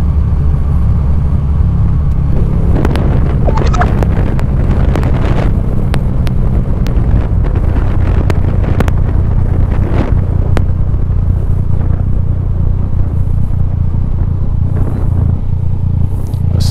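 Yamaha Tracer 900 GT's three-cylinder engine running at a steady cruise under a loud, even rush of riding wind on the camera microphone.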